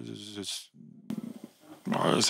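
A man's voice through a microphone draws out a hesitant "the…" for about half a second, then pauses for over a second with only faint room noise before he starts speaking again at the very end.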